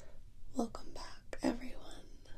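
A woman whispering close to the microphone in ASMR style, two short whispered phrases with a few softly voiced syllables.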